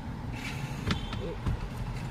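Automatic gear selector lever of a Toyota Innova HyCross being moved by hand: a sharp click about a second in and a dull thump half a second later, over a steady low hum inside the car's cabin.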